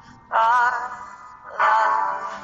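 A woman singing a ballad with vibrato over acoustic guitar: a short dip, then one sung phrase starting about a third of a second in and another about a second and a half in.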